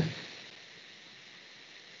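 A spoken word trails off right at the start, then a pause filled only by faint steady hiss of microphone background noise.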